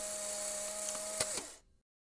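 A small electric motor runs with a steady whine and hum, gives a click, and stops about a second and a half in.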